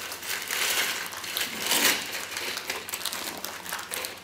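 A plastic ziplock bag crinkling and crushed ice crunching and shifting as the bag is dug out of a salted ice bath, an irregular rustle with a louder crunch about halfway.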